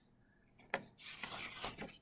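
Sheets of construction paper being handled on a wooden table: a single tap about three quarters of a second in, then a soft rustle of paper sliding and shifting.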